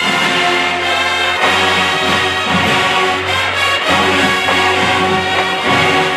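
High school marching band playing live, brass chords held over the band, the notes shifting every second or so.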